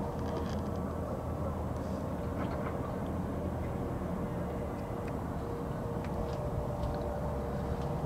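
A steady low mechanical drone, unchanging, with a constant thin hum over it and a few faint light clicks.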